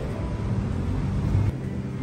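A low rumble that cuts off suddenly about one and a half seconds in, with background music running underneath.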